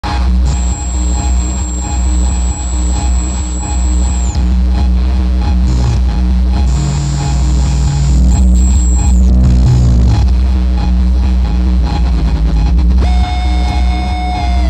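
Loud, noisy electronic music: a dense low drone throughout, with a high whistling tone held for a few seconds, twice. A new pitched tone enters about a second before the end.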